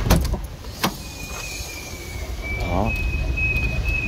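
Two sharp clicks about a second apart as the Toyota Innova's tailgate is unlatched and lifted, then a steady high-pitched electronic beep that holds on.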